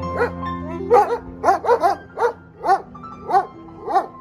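German shepherd police dogs barking repeatedly, about ten short barks, over piano music.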